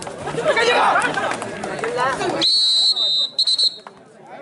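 Players and spectators shouting during a kabaddi tackle, then a referee's whistle about halfway through: one long blast followed by a couple of short blasts, calling the raid over after the raider is tackled.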